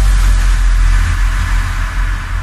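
Sustained deep electronic bass drone from a DJ remix, with a hiss above it and no beat or vocal, beginning to fade near the end.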